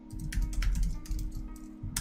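Computer keyboard being typed on: a run of quick, irregular keystrokes as a terminal command is entered.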